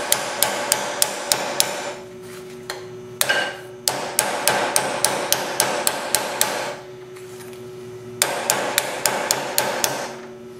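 Ball-peen hammer tapping the edge of a thin metal trim strip against a steel round bar, about four quick light blows a second, to beat its rolled edge into shape. The blows come in three runs with short pauses between.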